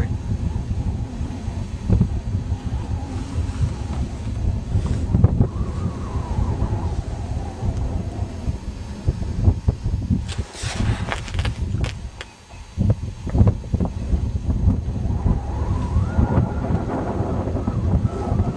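Wind buffeting the microphone: a continuous low rumble that rises and falls in gusts, easing off briefly about twelve seconds in. A short rustling noise sounds about ten seconds in.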